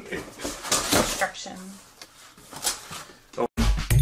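Cardboard rustling and knocking as items are handled inside a mattress shipping box, with faint voices. After a brief dropout near the end, background music with a heavy bass beat starts.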